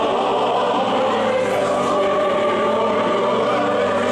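A large congregation singing a hymn together, many voices in a full, continuous sound.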